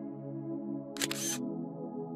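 Soft ambient music with sustained synth notes, and about a second in a single camera-shutter sound effect: a sharp click with a short bright burst, under half a second long.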